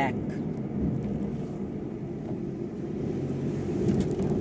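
Car cabin noise while driving: the engine and tyres make a steady low rumble heard from inside the car.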